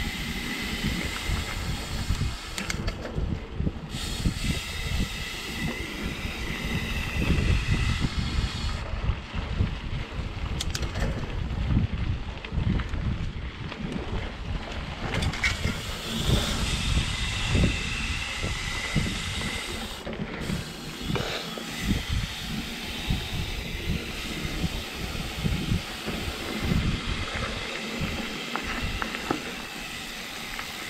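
Mountain bike riding down a dirt singletrack: knobby tyres rolling over the dirt and the bike rattling and clattering over bumps, with rushing wind on the microphone.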